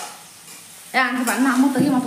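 Food sizzling as it fries in a kadai, stirred with a spatula. About a second in, a person's voice comes in over it, louder than the frying.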